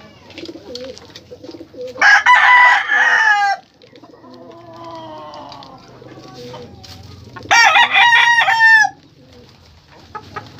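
Rooster crowing twice, about five seconds apart, each crow about a second and a half long and trailing off in a falling note.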